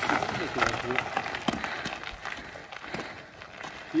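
Mountain bike tyres rolling and crunching over a gravel road: a steady rushing hiss broken by many small scattered clicks.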